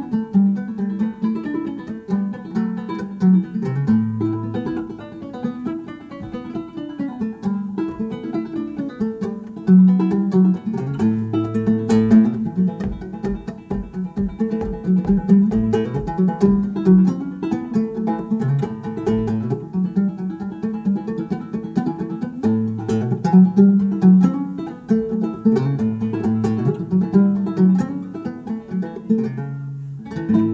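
Open-back banjo playing an instrumental passage of an old-time tune: a steady run of plucked notes over a repeating low note.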